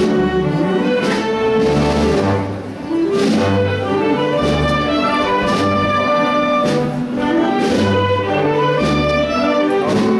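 A wind band of brass and woodwinds plays a Holy Week processional march, live. Sustained chords sit over a low bass line whose notes change about once a second, with percussion hits every second or so.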